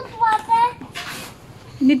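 Voices speaking, a child's among them, with a short burst of noise about halfway through.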